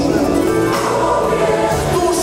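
A large mixed choir and a male lead singer performing a Christian worship song, with acoustic guitar and band accompaniment.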